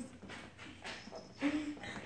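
A small puppy gives one short whimper about one and a half seconds in, over faint rustling as it is handled.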